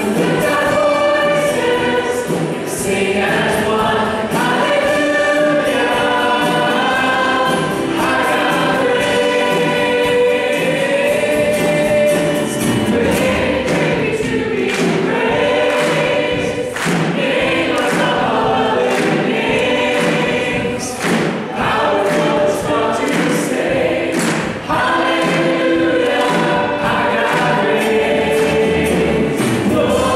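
Live contemporary worship song: several voices singing a hymn-like melody over acoustic guitar and keyboard, with steady percussion hits.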